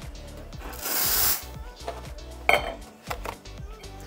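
One short hiss of steam about a second in, as an espresso machine's steam wand is purged, then clinks and knocks of crockery and metalware on the counter, with a sharp knock about two and a half seconds in. Faint background music runs under it.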